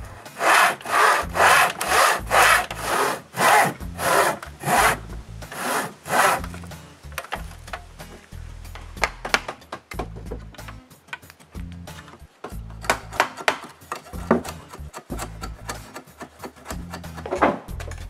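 Backsaw in a miter box crosscutting a small piece of wood with even strokes, about two a second. After about six seconds it gives way to quieter, irregular scraping and tapping as a chisel pares the wood.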